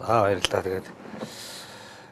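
A voice speaking for under a second, then a soft rustling hiss from a handheld interview microphone being moved and handled.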